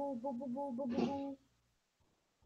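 A short repeating melody of steady tones stepping back and forth between two low pitches, cut off abruptly about a second and a half in, leaving dead silence.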